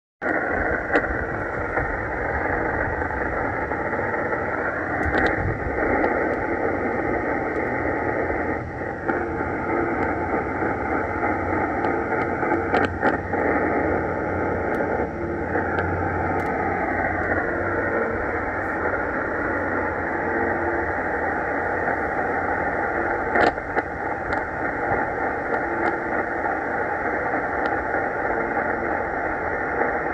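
Shortwave radio hiss and static from a Tecsun S-2200x receiver tuned to 4625 kHz in upper sideband, with the UVB-76 'Russian buzzer' faint in the noise floor. Sharp static crackles come now and then, and a faint whistle drifts in pitch midway through.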